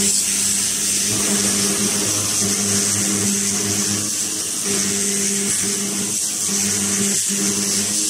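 Two handheld fiber laser cleaning heads, 1500 W and 2000 W, ablating rust from steel bars: a loud, steady high hiss over a low steady buzz.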